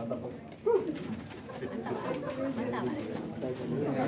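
Several people talking and murmuring in a room, with one short sliding vocal sound, rising then falling, less than a second in; the chatter gets louder toward the end.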